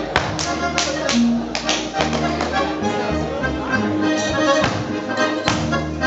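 Lively Alpine folk dance music with a steady bass, overlaid by sharp slaps and stamps repeated many times across the span, the hand-on-leather and shoe strikes of a Schuhplattler dancer.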